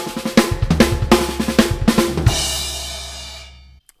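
Drum kit playing a fast snare-and-bass-drum fill built on six-stroke rolls, landing about two seconds in on a crash cymbal struck together with the bass drum. The crash rings for over a second and then cuts off suddenly near the end.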